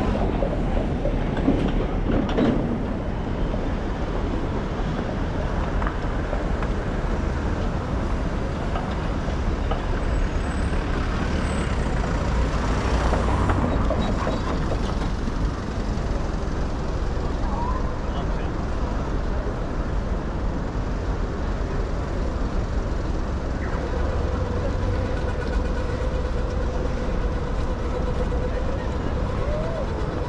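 City street traffic: a small truck's diesel engine running close by at the start, then other vehicles passing over a steady low rumble, with pedestrians' voices in the background.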